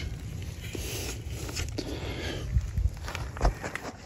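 Footsteps on wood-chip mulch, with a few short scrapes and knocks from handling, over a low rumble of wind on the microphone.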